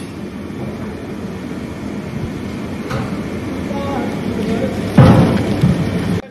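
Steady roar of a large gas burner under a biryani handi, growing louder. About five seconds in, a loud rushing splash as boiled rice and its water are poured into a bamboo strainer basket.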